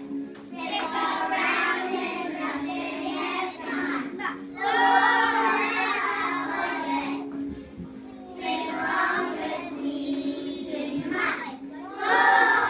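A group of young children singing a song together, in phrases broken by short pauses, with a steady low tone held underneath.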